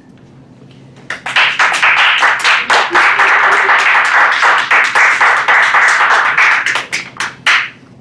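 A small audience applauding, starting about a second in and tapering off into a few last claps near the end.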